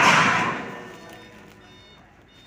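Bundle of long IWF steel I-beams sliding down a tilted truck bed, a loud rush of metal scraping that fades away about a second in.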